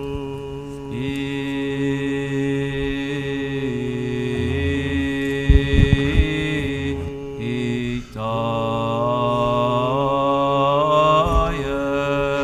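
Slow Orthodox liturgical chant: voices holding long notes that step from pitch to pitch over a steady low drone.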